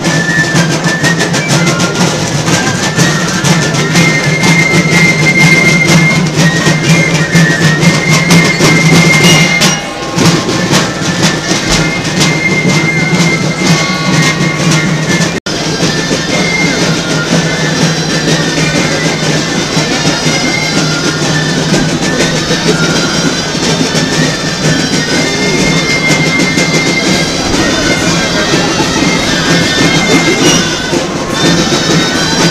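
A street band of wind instruments and drums plays a lively folk tune, with a steady low drone under the melody and busy drumming. The music breaks off briefly twice as the recording cuts.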